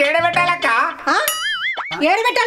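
Cartoon-style comedy sound effect: a wobbling 'boing' tone rises and falls a few times about halfway through, then drops away in a quick downward swoop. It comes after a second of warbling, bending pitched sounds.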